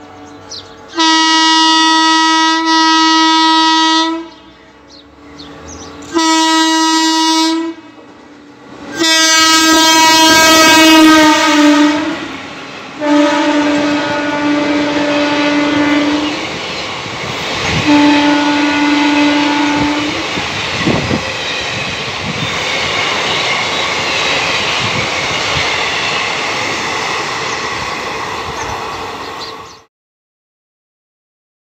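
Indian Railways WAP-4 electric locomotive sounding its horn in five long blasts as it approaches and runs through the station at speed. The rumble of the train swells as it arrives, then the express coaches pass with a steady rumble and clickety-clack, and the sound cuts off abruptly at the end.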